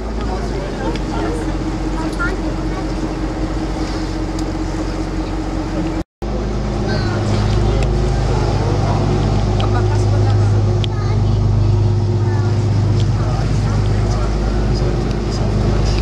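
A tour boat's engine running steadily under way, a continuous low hum. The sound cuts out briefly about six seconds in and comes back louder and deeper.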